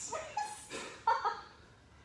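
A few short, high-pitched vocal squeals in quick succession, the loudest just after a second in.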